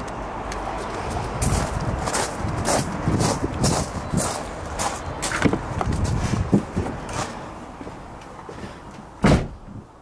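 Footsteps crunching on gravel at a walking pace, about three steps every two seconds, then one louder thump near the end.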